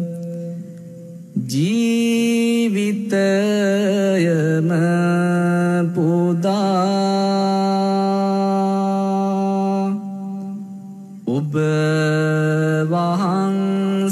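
Buddhist devotional chanting by a male voice, in long held notes with wavering melodic turns. It breaks off briefly twice, about a second in and again about ten seconds in.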